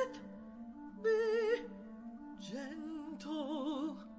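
Operatic duet singing over held accompaniment chords: a woman's voice sings a high note with wide vibrato about a second in, then a lower voice sings a longer vibrato phrase through to near the end.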